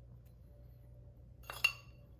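A metal spoon clinks against a dish a couple of times about one and a half seconds in, with a short ring, while scooping crumbly topping.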